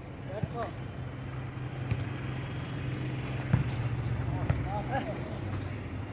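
A steady low engine hum with faint distant voices, and a sharp smack of a volleyball being hit about three and a half seconds in.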